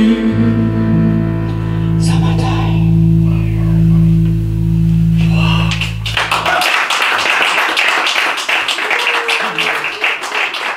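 A small band's last chord, on electric guitars, held and ringing for about six seconds, then cut off and followed by applause from a small audience.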